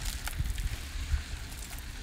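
Faint background of an outdoor building site: a low rumble with a few light clicks about a quarter second in.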